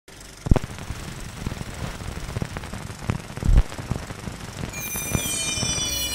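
Soundtrack sound effects: a rough noisy bed with scattered sharp knocks, the loudest about half a second in and another at three and a half seconds. Near the end, several high whistling tones glide downward in pitch together.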